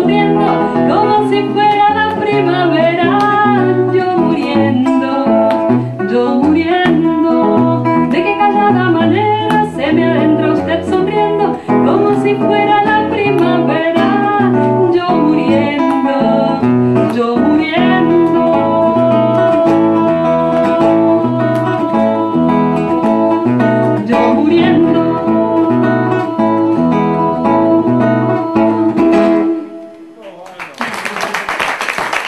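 A woman singing a ballad in Spanish into a microphone, accompanied by a nylon-string classical guitar. The second half has longer held notes, and the song ends just before the close.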